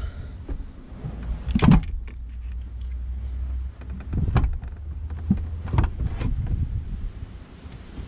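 Heavy car battery in its plastic case being slid across the boot's battery tray into its compartment: a low scraping rumble for the first few seconds, with sharp knocks at intervals as it is pushed home.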